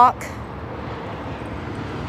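Steady rumble of highway traffic, with no distinct passes or horns.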